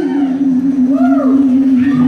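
Live blues rock band ending a song on one long held note that wavers slowly in pitch.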